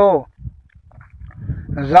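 Speech only: a storyteller's word trailing off with falling pitch, a pause of about a second, then the narration resuming near the end.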